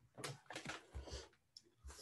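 Faint clicks and rustles picked up by a computer microphone, a few short sounds in the first half over otherwise near silence.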